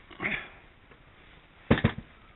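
A soft breathy noise just after the start, then a sharp knock with a brief rattle near the end, from handling the plastic-wrapped Skywatcher EQ8 mount head in its hard carry case.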